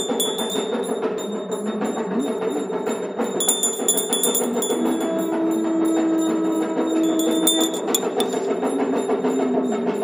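Hindu aarati worship music: bells ringing rapidly and continuously over percussion, with a steady high bell tone. A single low note is held for about three seconds midway.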